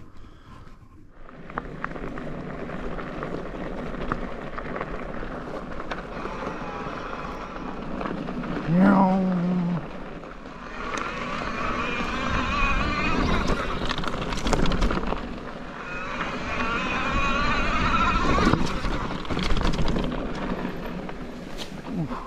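Sondors e-mountain bike being ridden over a dirt and gravel trail: tyre crunch and rumble with wind on the camera microphone. High warbling squeals come in twice, each for a few seconds, typical of disc brakes that the rider says need better pads.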